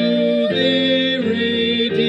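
A hymn during a worship service: music with singing, held notes and chords changing about every half second.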